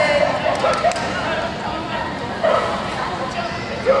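A few short shouted calls from a handler directing a border collie through an agility course, over steady arena background noise.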